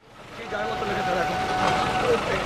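Sound fading in from silence over about half a second to people's voices over a steady background noise.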